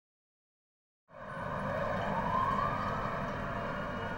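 After a second of silence, an emergency-vehicle siren wails, its pitch rising, over a low steady hum.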